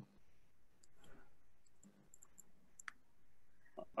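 Near silence with a handful of faint, sharp clicks scattered through it.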